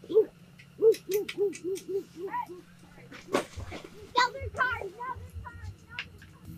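A voice making a quick run of short hooting "hoo" calls, about three a second, each rising and falling in pitch, for the first couple of seconds. A sharp click follows, then quieter voice sounds.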